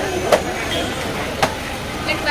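Steady outdoor background noise with two sharp knocks about a second apart.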